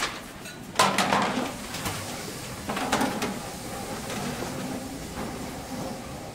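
Knocks, scrapes and shuffling footsteps as chairs are picked up and carried off a stage, with the loudest clatters about a second in and around three seconds in.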